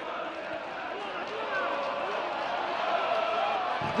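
Stadium crowd noise from a football match on a TV broadcast: a steady wash of many voices with faint individual calls in it.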